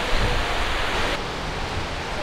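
Sea surf washing onto a sandy beach: a steady rushing hiss with an uneven low rumble underneath. About a second in, the high part of the hiss drops away and the sound turns duller.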